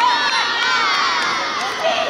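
A group of children shouting and cheering together on a playing field, many high voices overlapping. The crowd of voices is densest at the start and thins out toward the end.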